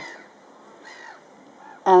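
Faint, harsh calls of distant birds about a second in, in a lull between stretches of a woman's speech.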